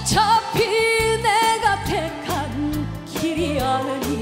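A woman singing a Korean trot song with a live band on keyboards, bass and drums; she holds long, wavering notes.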